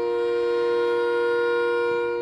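Wind instruments of a live orchestra holding a sustained two-note chord, steady in pitch and loudness.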